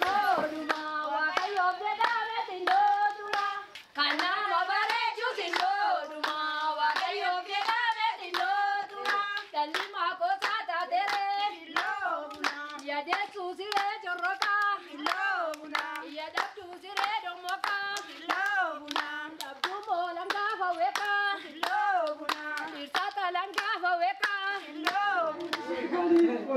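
A group of women singing together with steady hand-clapping, about two claps a second. The singing dips briefly about four seconds in.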